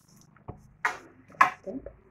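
Crepe paper being handled and crinkled, with two short crisp crinkles about a second in after a soft knock, and a brief bit of voice near the end.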